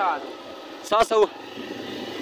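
Motorcycle being ridden on a rough dirt road: a steady hum of engine and road noise. A short burst of voice comes at the start and again about a second in.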